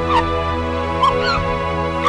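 Sad background music with steady sustained notes, over which a person gives short, high whimpering cries at the start and again about a second in.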